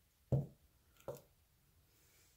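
Two soft knocks about a second apart, the first the louder: a clear acrylic stamp block with a photopolymer stamp pressing down on paper on the work surface and then being lifted off and set aside.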